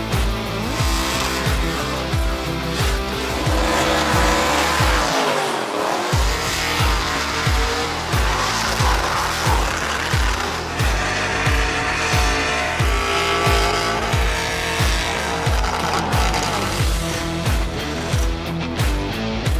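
Backing music with a steady kick-drum beat, mixed with the engine and tyre squeal of a car doing a burnout. The bass drops out briefly about five seconds in.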